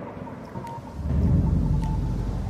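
A deep, thunder-like rumble that swells about a second in, with faint high pings over it: a cinematic intro sound effect.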